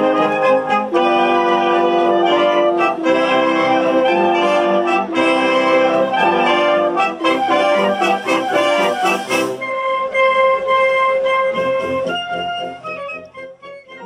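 A wind band of clarinets, saxophones and brass playing together in full. About ten seconds in the sound thins to one long held note, and a few quieter notes follow as the music fades near the end.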